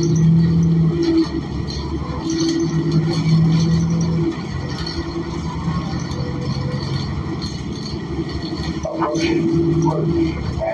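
Interior of a New Flyer XN40 transit bus under way: its Cummins Westport ISL G natural-gas engine and Allison transmission drone steadily, with a low hum that fades and returns a few times.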